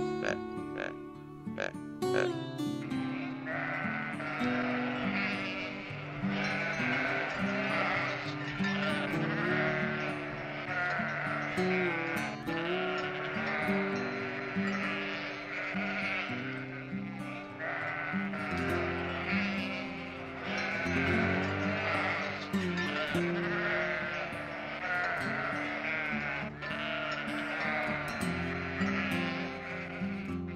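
A flock of sheep bleating, many calls overlapping without a break, over background music. The bleating comes in about two and a half seconds in, after a few plucked notes of music.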